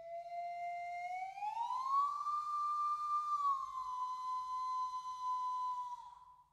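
A single slide-whistle tone played as part of a contemporary percussion score. It starts low, glides up nearly an octave about two seconds in, sags a little, holds, and stops near the end.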